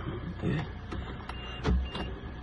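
A car being started: a few light clicks, then a short heavy low rumble near the end as the engine turns over, over a steady low hum.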